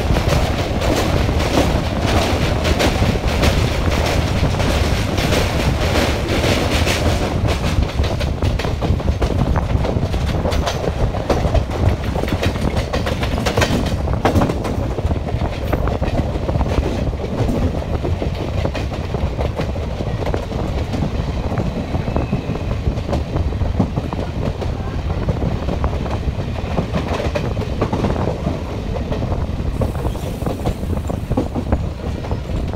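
Passenger train running, heard from an open coach window: wheels clattering on the rails over a steady rumble. The clatter is busiest and loudest for the first seven seconds or so, then settles into a steadier, somewhat quieter run.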